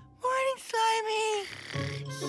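A cartoon creature voice giving two sung-like notes: a short one that rises and falls, then a longer one that slowly falls.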